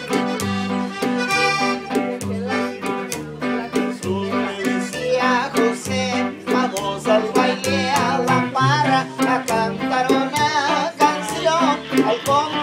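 Live norteño trio playing: piano accordion, upright bass and guitar, with the bass notes and guitar keeping a steady, even beat under the accordion.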